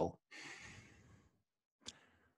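A man's breathy out-breath, a sigh of about a second that fades away, picked up close on a headset microphone, followed by a brief click near the end.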